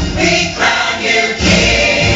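Choral music with singing, loud, as a dance accompaniment. The low end drops away for about the first second and a half, then the full accompaniment comes back in.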